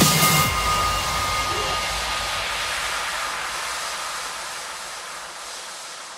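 Outro of an electronic trance track: the kick drum stops and a hissing wash of synthesized noise, with a faint lingering synth tone in the first couple of seconds, fades out slowly.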